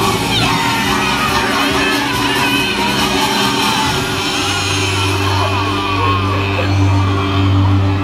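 Loud parade music with voices shouting and whooping over it in the first half; a steady low bass note holds from about halfway.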